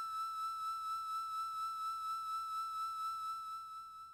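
Dungeon synth music ending on a single high, flute-like synthesizer note, held with a slight regular wavering and fading out from about three seconds in.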